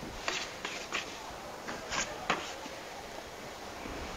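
Scattered light knocks, about half a dozen, as ciabatta dough is cut into pieces and handled on a floured stainless steel work table.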